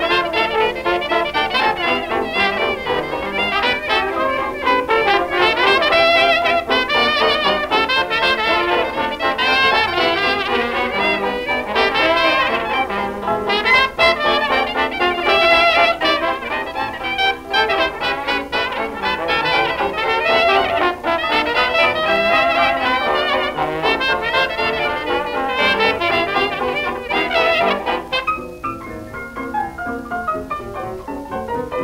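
A 1920s hot jazz small band playing instrumentally, a trumpet leading over trombone, clarinet, piano, banjo and drums. It has the narrow, hissy sound of an old 78 rpm recording and thins out in the last couple of seconds.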